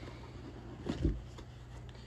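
Cardboard lid being lifted off a plastic model kit box: soft handling sounds with a dull bump about a second in.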